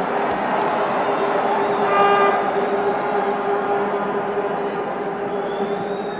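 Large stadium crowd cheering, a steady wash of noise with sustained horn tones over it and one stronger horn blast about two seconds in.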